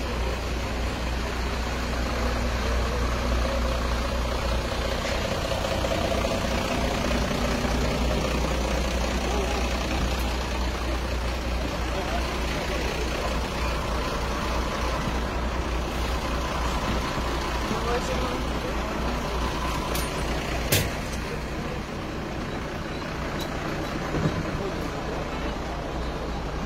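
A large vehicle's engine running steadily with a low rumble, and a sharp knock late on.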